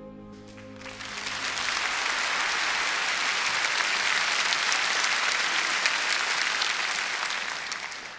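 Soft music dies away at the start, then a crowd applauds: dense clapping that swells over the first two seconds, holds steady and fades near the end.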